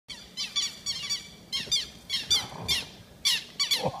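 Southern lapwings giving a rapid run of sharp, high alarm calls, each a quick falling note, about two to three a second. This is the birds mobbing a person who has come close to their ground nest.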